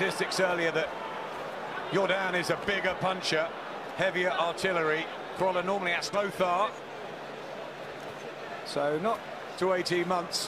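Men talking, heard as broadcast boxing commentary over a steady arena crowd noise, with a scatter of short sharp slaps and thuds through it.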